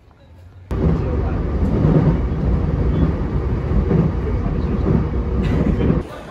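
A train running past: a loud, steady low rumble that starts suddenly just under a second in.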